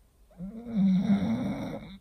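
An English bulldog snoring in its sleep: one long, rough snore with a wavering pitch that starts about half a second in and cuts off suddenly.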